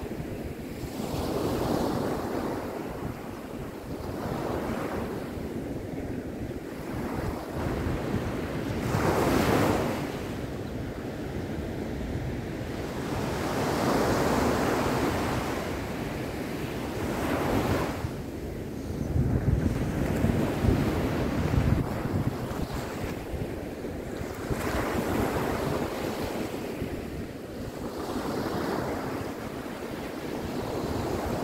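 Ocean surf breaking and washing up a sandy beach, swelling and fading every few seconds, with wind buffeting the microphone.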